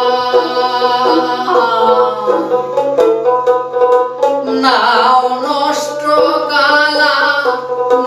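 Male folk singer singing a Bhawaiya song with long held notes that glide and bend, over his own dotara's repeated plucked string notes.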